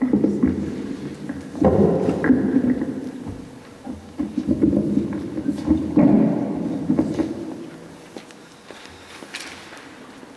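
Handling noise from a live stage microphone being moved and adjusted on its stand, heard through the hall's PA: several bursts of rumbling thuds and scrapes that die away near the end.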